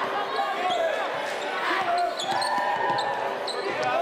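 Live gymnasium sound from a basketball game: a basketball dribbling on the court under a crowd's indistinct voices, with short high squeaks scattered through.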